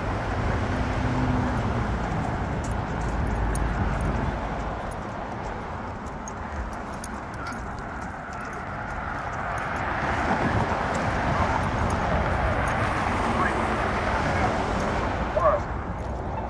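Road traffic at a signalized intersection with wind rumbling on the microphone; a passing vehicle swells the noise in the second half.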